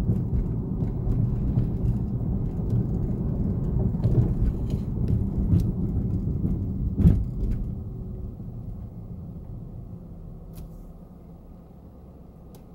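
Car interior road and engine rumble while driving, with a single thump about seven seconds in. The rumble then fades to a quieter hum over the last few seconds as the car comes to a stop.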